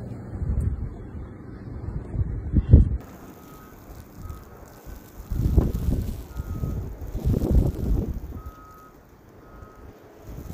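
Gusty wind buffeting the microphone in surges of low rumble. From about three seconds in, faint short high beeps come and go.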